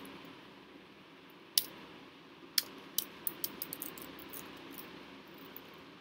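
Computer keyboard keystrokes: a single key click about a second and a half in, another a second later, then a quick run of about eight keystrokes, over a faint steady background hiss.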